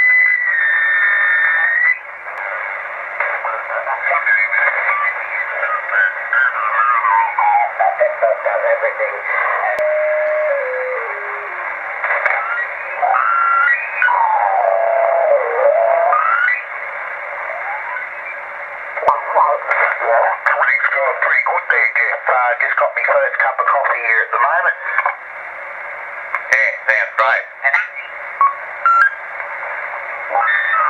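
Receiver audio from an unmodified uBitx transceiver tuned slowly across the 80 m band on LSB. It carries very loud, garbled voices and whistles that slide up and down in pitch as the dial moves. This is AM broadcast-band interference breaking through because there is no high-pass filter in the receive antenna line.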